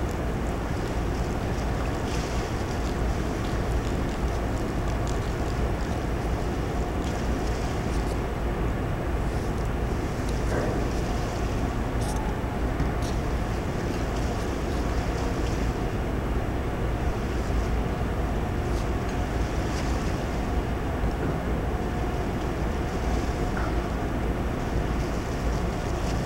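Steady wind noise on the microphone over a continuous low rumble, with a faint steady hum running underneath.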